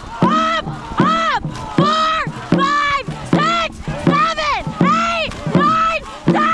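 Dragon boat crew shouting in rhythm with the paddle strokes during the start sprint: a loud, high-pitched yell repeated about twice a second, each call rising and falling in pitch.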